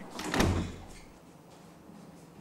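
A wooden door shutting with a single thud about half a second in.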